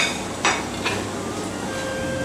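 Two or three light clinks and knocks of dishes being handled on a stainless-steel counter, about half a second apart in the first second, followed by a steady background hiss.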